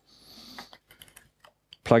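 A brief soft rustle followed by several light, irregular clicks from hands working at a laptop. A man's voice starts near the end.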